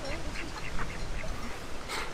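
Ducks quacking in a run of short calls, with wind rumbling on the microphone.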